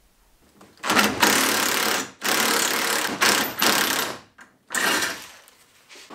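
Cordless power driver running in three bursts, each one to two seconds long, as it backs out the bolts holding a cross tube to the vehicle's tub.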